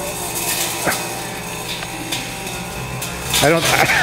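Microwave oven running with a steady hum while a CD inside it arcs, giving irregular sharp crackles and snaps.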